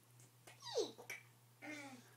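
A toddler's short vocal sound, pitched high and falling steeply about half a second in, then a click and a brief low voice sound near the end.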